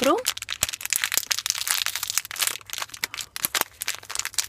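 Small clear plastic sachet crinkling and crackling irregularly as fingers work at it to open it.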